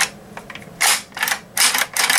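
The action of a Franchi Affinity 12-gauge semi-automatic shotgun being worked by hand in a function check after reassembly. A sharp click comes at the start, then several quick metallic clacks and sliding rasps from about a second in.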